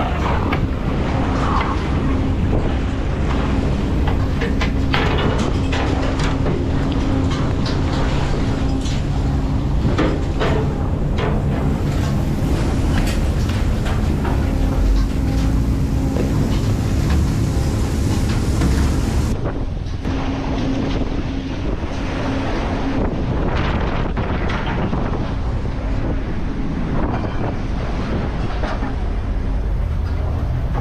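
Fishing boat's engine and deck machinery running steadily, with irregular knocks and clatter from gear and fish being handled, and wind buffeting the microphone. The sound changes abruptly about two-thirds of the way through.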